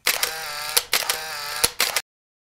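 Editing sound effect for a video transition: a bright, sustained tone with a few sharp clicks, cut off abruptly at the end.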